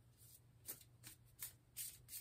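A deck of cards being shuffled by hand, heard faintly as a series of short rustling strokes, about five in two seconds, the last the loudest.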